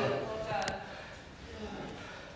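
Faint, trailing voices in a gym, with one sharp click a little under a second in.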